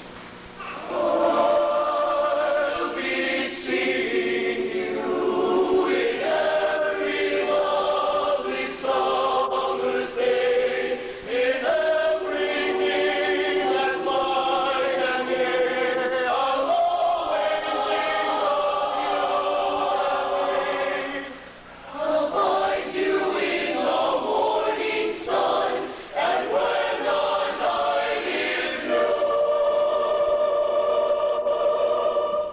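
High school mixed choir of boys' and girls' voices singing a choral piece. The singing comes in about a second in, with a short break for breath a little past the twenty-second mark.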